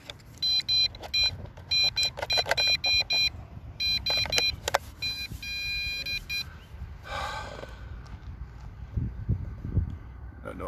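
Potensic D80 toy drone set beeping: runs of short, rapid, high-pitched electronic beeps over the first six seconds or so, then stopping, with a brief rustle and a few handling knocks afterwards. The beeping is a warning that its batteries are not making good contact.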